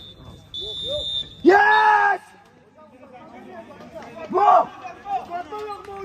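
A referee's whistle in two long, steady blasts in the first second or so, signalling the end of the match, followed by a man's loud shout and then scattered voices.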